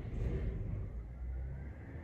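Garbage truck engine running, heard as a faint, steady low rumble.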